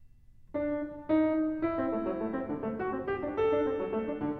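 Solo grand piano: after a brief hush, playing resumes about half a second in, with a louder chord a moment later and then a quick, continuous run of notes in waltz figuration.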